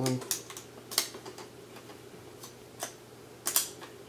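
A handful of irregular sharp clicks and taps from fingers working in an iMac's memory compartment, tucking the plastic pull tabs under the installed RAM modules.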